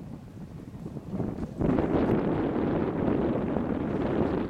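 Wind buffeting the microphone: a low, rushing noise that swells sharply into a loud gust about a second and a half in and stays loud.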